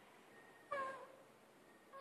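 Near silence broken once, about two-thirds of a second in, by a single short high-pitched call that dips in pitch at its end.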